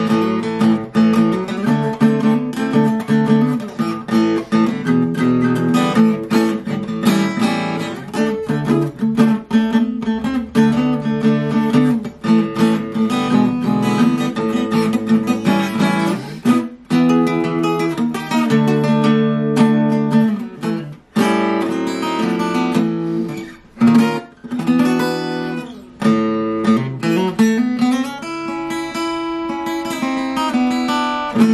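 1990 Washburn Festival EA20 electro-acoustic guitar played unplugged, heard acoustically: a continuous passage of changing chords and notes, with a few short breaks in the second half.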